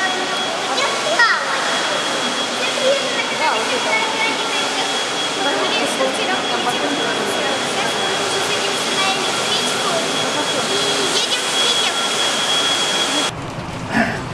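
Steady rushing background noise of a waiting hall, with indistinct voices in it and a thin, steady high-pitched whine. It all cuts off abruptly just before the end.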